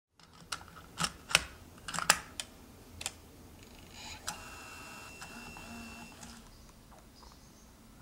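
Plastic mechanism of a MiniDV camcorder: a quick series of sharp clicks, then a motor whirring with a thin high whine for about two seconds.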